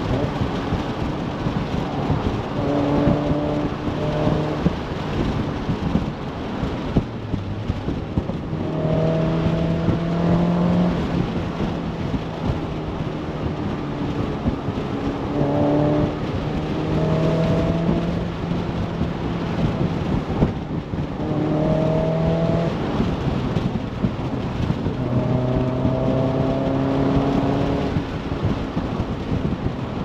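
BBR GTi Super 185–tuned Mazda MX-5 NC's four-cylinder engine accelerating through the gears, its pitch climbing in each gear and dropping at the shifts, several times over, above heavy wind and road rumble.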